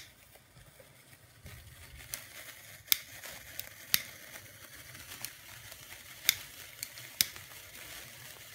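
Cake sparklers fizzing and crackling as they burn, with several sharp clicks at irregular moments.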